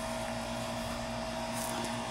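A steady mechanical hum: two constant tones over a low, even drone that holds unchanged throughout.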